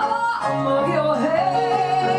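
Woman singing with piano accompaniment. Her voice slides down and back up about a second in, then holds one long, steady note to the end.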